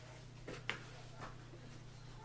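Handling of a folded Bluetti PV200D solar panel's fabric case while its fasteners are worked open: a few faint, short clicks and rustles, the sharpest just under a second in, over a low steady hum.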